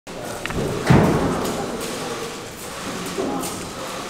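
A heavy thud about a second in, followed by footsteps and a few knocks on a wooden parquet floor, with low murmuring voices in a large room.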